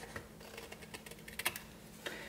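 Small scissors snipping through a thin strip of paper: a run of faint, quick clicks, with a couple of sharper snips about a second and a half in.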